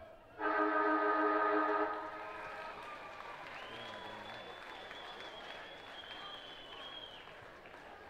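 Football ground siren sounding the end of the quarter: one loud, steady horn-like blast of about a second and a half that cuts off with a short echo.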